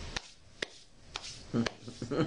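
Several sharp taps, about half a second apart, over quiet room tone, the last couple louder.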